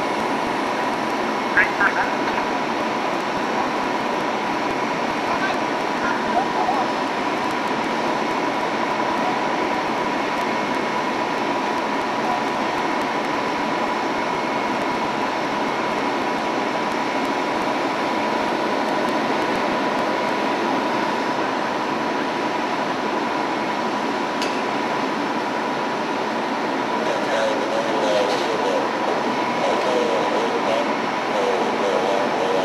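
Fire apparatus running at the scene: a loud, steady engine roar with a thin steady whine held through it.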